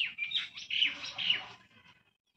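A small bird chirping: a quick run of about four short, high, falling notes, which stops about a second and a half in.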